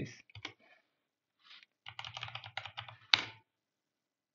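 Computer keyboard typing: a quick run of keystrokes ending in one sharper, louder key stroke, as a sudo password is typed and entered to start a dnf package install.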